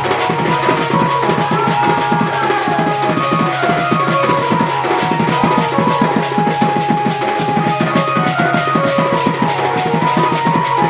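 Live Sambalpuri folk music: a barrel drum (dhol) beaten with a stick keeps a fast, even beat under a high melody line of held notes that slide from one pitch to the next.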